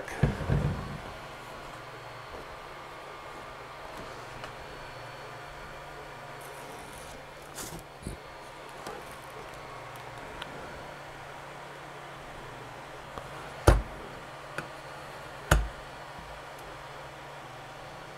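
Two sharp knocks about two seconds apart, over a steady low hum, with faint handling sounds earlier as vinyl and glass are handled on a countertop.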